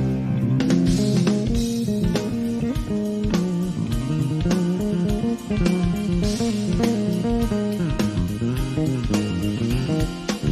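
Live instrumental rock: a Fender Stratocaster electric guitar playing lead lines over a bass guitar line and a steady beat.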